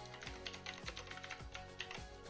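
Computer keyboard typing: a quick run of keystrokes entering a line of text, over steady background music.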